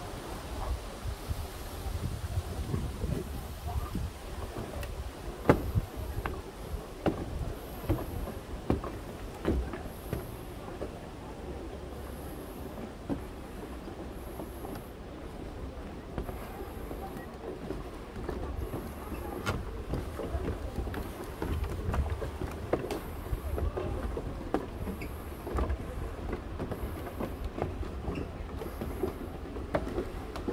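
Footsteps on a wooden boardwalk, sharp knocks about once a second over a continuous low rumble, with faint voices of other people in the distance.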